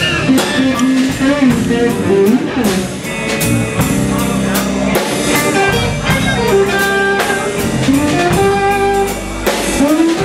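Live blues band playing: an electric guitar leads with bent notes over electric bass and a drum kit keeping a steady beat.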